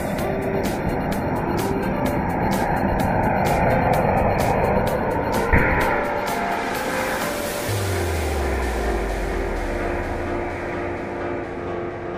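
Firework rocket on a toy train coach firing: a loud rushing hiss of burning sparks, with a sharp bang about five and a half seconds in, fading after about six seconds. Background music with a steady beat plays throughout.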